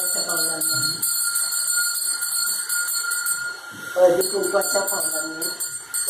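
A handbell rung steadily and continuously, as in puja ritual, with women's voices calling out in chant near the start and again in the last two seconds.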